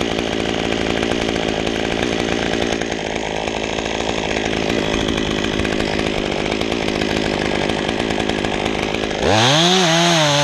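Top-handle chainsaw running under load, cutting across an oak trunk. Near the end the saw gets louder and its engine note climbs and then falls.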